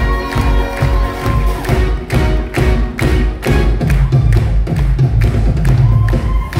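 Live pop-rock band of electric guitar, bass guitar, keyboards and drums playing loudly, with a steady, heavy drum beat about two strokes a second.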